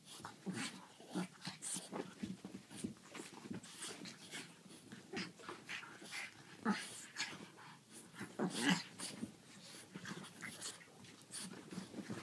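A French bulldog and a griffon play-fighting, with quick irregular bursts of growls and heavy breathing and the scuffle of paws and bodies on the blankets. The loudest bursts come just past the middle.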